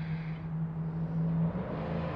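Steady low hum of a motor vehicle's engine from nearby traffic, with a low rumble under it; the hum changes about one and a half seconds in.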